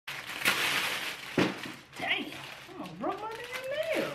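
Clear plastic bag crinkling and rustling as it is pulled and torn open, loudest in the first second and a half. Near the end comes a long rising, drawn-out vocal call.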